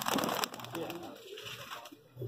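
Domestic pigeons cooing softly, with a few sharp clicks near the start; the sound dies away toward the end.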